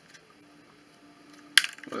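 Quiet handling of a plastic earphone carrying case, then one sharp plastic click about one and a half seconds in and brief small crackling as the wound cable of Apple EarPods is worked out of it.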